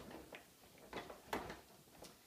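Three or four light plastic clicks and knocks from a Clek Foonf car seat and its rear-facing base being handled on a countertop, the sharpest about a second and a half in.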